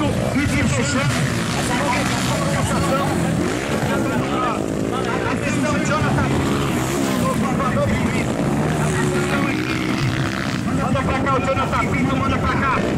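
Motocross motorcycle engines revving hard and easing off as the bikes ride over the dirt track's jumps, their pitch rising and falling over and over, with more than one bike running at once.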